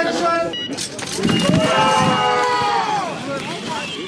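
A voice calls out a long drawn-out shout lasting about two seconds, falling in pitch at its end, with a faint steady high tone beneath its first half.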